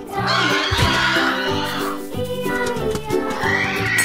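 Upbeat background music with steady note patterns, with an animal-like cry mixed over it in the first two seconds and a short rising glide near the end.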